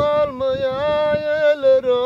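Turkish folk song: one long sung note with a wavering pitch, held over a steady lower drone.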